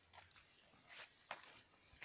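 Faint footsteps on a rocky path strewn with dry leaves: a few soft steps, the clearest a little past the middle.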